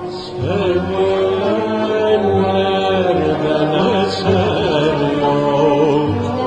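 A Turkish classical (art music) song in makam Hicaz, usul Düyek: a singer's voice moving in wavering, ornamented lines over steady sustained instrumental accompaniment.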